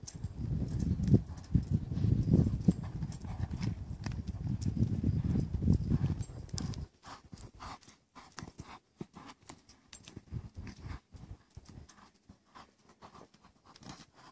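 Colt loping circles on a lead line over sand: muffled hoofbeats and scattering sand, with light clicks and ticks. For about the first seven seconds a low rumble of wind buffeting the microphone is the loudest sound; it cuts off abruptly.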